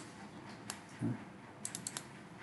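Computer keyboard keystrokes and mouse-button clicks: one click at the start, another under a second in, then a quick run of four or five clicks near the end. A short low sound comes about a second in.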